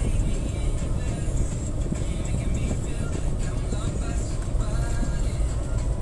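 Steady low rumble of road and engine noise inside a moving car's cabin, heard through a phone's microphone, with music playing faintly underneath.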